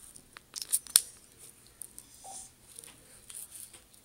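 Loose rhinestones shifting and rattling in a small plastic container as it is tilted and handled, with a few sharp clicks around one second in and faint rustles after.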